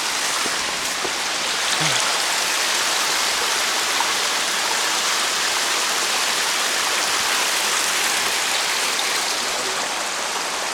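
Creek water running steadily over rocks.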